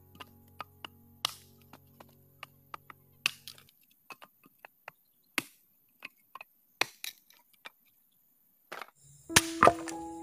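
Dry wood board being split into kindling with a hand-held blade: a run of irregular sharp chops and cracks, with a few louder knocks near the end.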